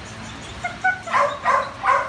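A dog barks three times in quick succession in the second half, after a few faint whines.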